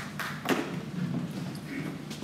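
A single sharp knock about half a second in, over a steady low murmur of a large hall.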